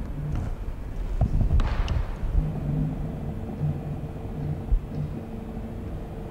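Low steady rumble with a few soft knocks and a brief hiss between one and two seconds in, under a faint steady hum.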